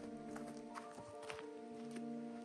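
Calm piano music with long held notes, over a few light, irregularly spaced footsteps on a forest trail.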